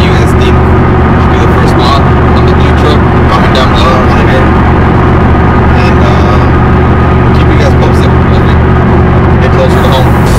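Loud, steady road and engine noise inside the cab of a Chevrolet Silverado pickup cruising at highway speed, with a man's voice partly buried under it.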